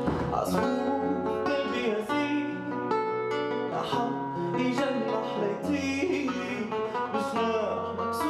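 A nylon-string classical guitar is strummed and picked in a live acoustic song, with sharp chord strokes about once or twice a second, and a man sings over it.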